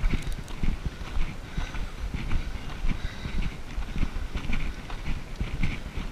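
Footsteps on a gravel path at a steady walking pace.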